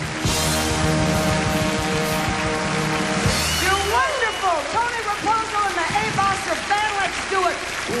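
Live big band playing a swing number. A sustained chord rings over bass and drums with cymbal wash for the first half, then about four seconds in it breaks into quick, short notes that arch up and down in pitch.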